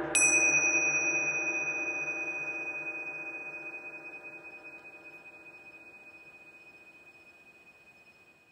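The closing of an ambient track: a single high bell-like chime is struck just after the start and rings on, slowly fading, while the low drone beneath it dies away.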